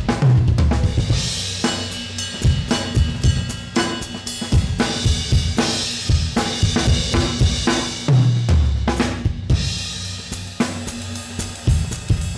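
Acoustic drum kit played with sticks: a busy pattern of snare, kick, tom and hi-hat strokes, with crashes on Saluda Earthworks Hybrid cymbals ringing out several times. Heavy low drum hits fall at the start and again about two-thirds of the way through. The cymbals are fully broken in.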